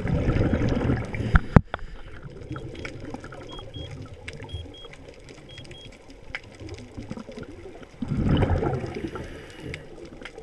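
Scuba diver's exhaled bubbles rushing out of the regulator, heard underwater, in two loud bursts: one at the start and another about eight seconds in. Between them the water is quieter, with a faint scatter of clicks and a single sharp click.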